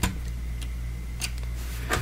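Light clicks of Lego plastic as a minifigure is pressed into a brick-built cockpit seat: a few separate ticks, the loudest near the end.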